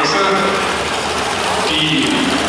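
A Ford Anglia drag car's engine idling with a steady low rumble, under the voice of a track announcer over the public address.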